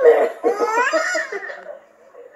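A baby and an adult laughing, with a high voice rising in pitch about half a second in, heard through a laptop speaker.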